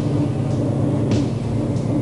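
Bus engine running with a steady low rumble, heard from a moving vehicle.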